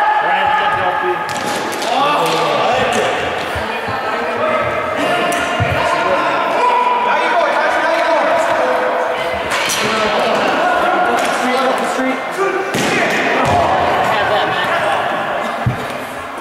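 Players on the ice and on the bench shouting and calling out in a large echoing indoor rink during a broomball game. The voices run almost without a break, cut by sharp knocks and slaps from the sticks and ball every few seconds.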